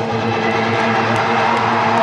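Live rock band playing, electric guitars holding sustained, ringing chords.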